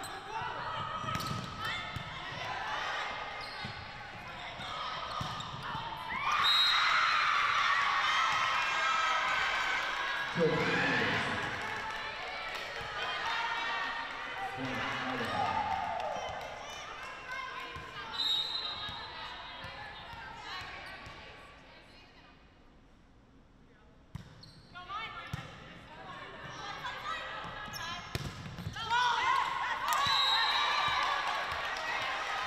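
Indoor volleyball play in a large, mostly empty arena: players shouting short calls to each other, with the ball being hit and bouncing on the court. There is a quieter lull about two-thirds of the way through, then the calls pick up again near the end.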